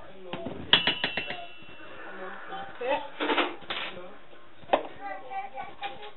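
A metal teaspoon tapping several times in quick succession against a stainless-steel mixing bowl, with a brief metallic ring, as salt is knocked off it into the flour. A single knock follows a few seconds later.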